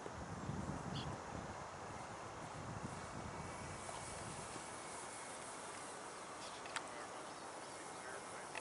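Quiet outdoor background noise with a low rumble in the first second or so and one sharp click near the end.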